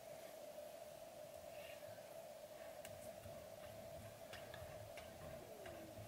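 Near silence: a faint steady hum with a few faint, scattered small clicks.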